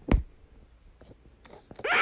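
A short low thump just after the start. Then near the end a voice begins a drawn-out, moaning call whose pitch bends up and down.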